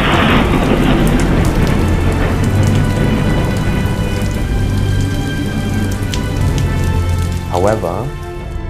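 Thunderstorm sound effect: steady heavy rain with a crack of thunder right at the start, over sustained background music. A voice comes in near the end.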